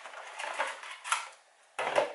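Cardboard box and the plastic packaging inside it being handled and searched: light rustling with a few sharp clicks. It stops abruptly about three-quarters of the way through.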